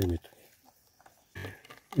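A man's voice finishing a phrase, then a near-silent pause broken by one brief rustle before he speaks again.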